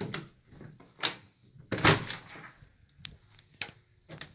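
A house door being opened and pulled shut, with a series of clicks and knocks from the latch and handle; the loudest knock comes about two seconds in.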